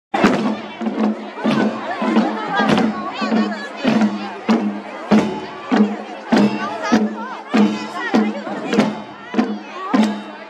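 Himachali folk festival music: drums struck in a steady beat a little under twice a second, over a steady low drone and a wavering high melody.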